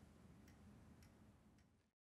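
Near silence: faint room tone with a soft ticking about twice a second, fading out to complete silence near the end.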